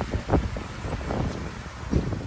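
Wind buffeting the microphone: an uneven low rumble that swells in gusts, briefly louder just after the start and again near the end.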